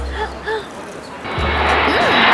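Loud crunching of crispy fried lumpia being bitten and chewed, strongest for about a second near the end. Background music with a steady bass plays underneath.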